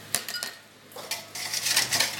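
Wire whisk clinking against a stainless steel bowl: a few light clinks, then rapid clattering strokes from about a second and a half in as it beats the egg batter.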